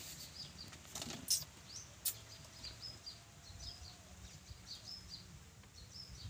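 Faint, repeated high chirps of small birds, several each second, with a few light knocks in the first two seconds.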